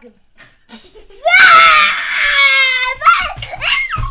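A child's scream in play, a mock dragon roar, held for nearly two seconds from about a second in, then two shorter shrieks near the end.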